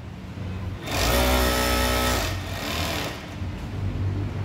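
Sewmac electronic industrial coverstitch machine (galoneira) stitching fabric with two needles. Its motor starts about a second in, runs fast at a steady pitch for about a second and a half, then winds down and stops.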